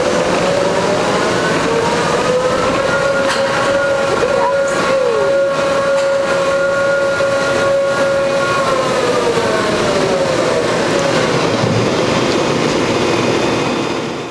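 Ride machinery whining as the arm brings the riders back to the platform: a pitched hum that rises about a second and a half in, holds steady, then falls away from about nine seconds, over a constant rushing noise with a few faint clicks.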